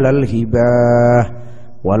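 A man's voice chanting a line of Arabic verse into a microphone, holding one long steady note for under a second, then a short pause before the next chanted phrase begins near the end.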